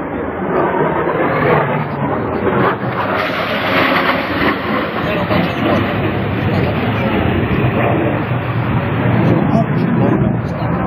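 Aircraft flying overhead: a loud, steady engine roar, with indistinct voices mixed in.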